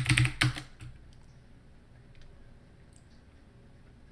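Computer keyboard typing: a quick run of keystrokes in the first second, then a few faint, isolated key clicks.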